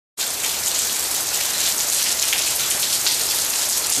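Heavy rain falling steadily onto a puddled driveway and grass, a dense, even hiss of drops.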